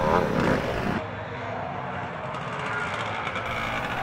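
Motocross bike engines running on the track, heard at a distance. A little after a second in, the sound changes abruptly and becomes duller.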